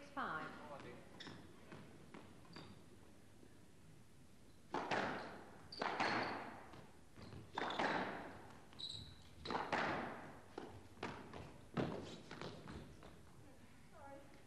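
Squash rally on a glass-walled court: the ball cracking off racquets and walls about once a second from about five seconds in, each strike echoing in the hall.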